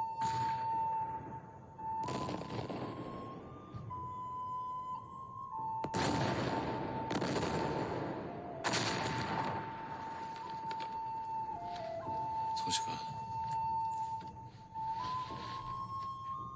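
Film score with a slow flute melody over a series of loud blasts, each with a long echoing tail, about five in the first nine seconds. Sharper crackling bursts follow near the end.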